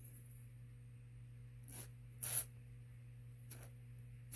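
WD-40 aerosol can giving short spurts through its thin straw onto a rusted bayonet grip screw, to soak the stuck threads. Three brief hisses come about two seconds in, half a second later (the loudest) and near the end, over a low steady hum.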